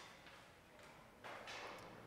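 Near silence: quiet room tone in a large hall, with a faint soft noise a little past the middle.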